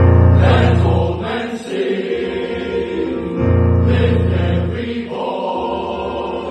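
Male voice choir singing in full harmony, with a strong bass line, in two loud sustained phrases, the second starting about three and a half seconds in.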